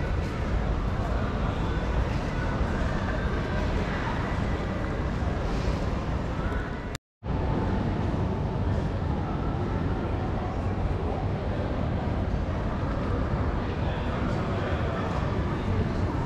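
Indistinct voices and general hubbub of a crowd echoing in a large station hall, over a steady low rumble. The sound cuts out completely for a split second about seven seconds in.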